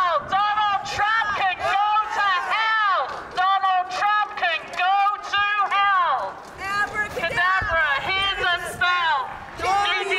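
A voice through a megaphone, calling or chanting in a continuous run of high, rising-and-falling syllables whose words are not made out. It breaks briefly about six seconds in and again near the end.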